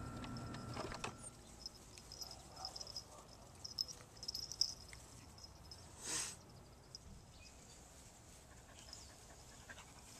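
Faint outdoor quiet with insects chirping in a high, uneven pulse, and a short breathy rush about six seconds in.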